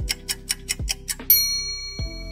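Quiz countdown-timer sound effect: quick, even clock ticks, cut off just after a second in by a bright bell-like chime that rings on, marking time up and the correct answer being shown. Quiet background music runs underneath.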